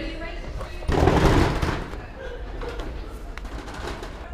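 A loud, dense thump and scuffle lasting under a second, about a second in, as someone climbs over a corrugated metal site hoarding onto scaffolding. Indistinct voices of passers-by are heard behind it.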